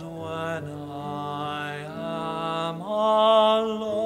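Tenor voice singing slow, sustained notes over piano accompaniment. About three seconds in, the voice slides up into a louder held note.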